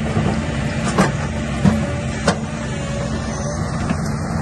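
2014 Caterpillar 316EL crawler excavator running steadily as its arm and bucket are worked, with three sharp knocks between about one and two and a half seconds in.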